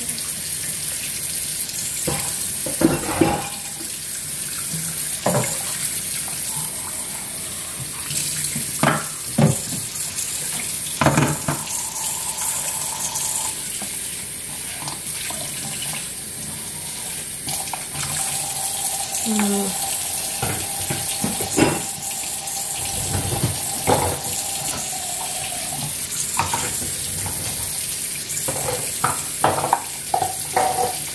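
Kitchen tap running into a sink while dishes are washed by hand, with clinks and knocks of dishes being handled at irregular moments through the running water. A steady tone is held for several seconds in the second half.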